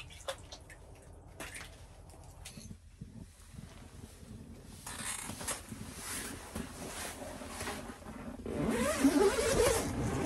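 Nylon puffy jacket and quilted shelter fabric rustling as a person moves about inside a small ice-fishing shelter. It is quiet at first and grows louder over the last few seconds as they push toward the door.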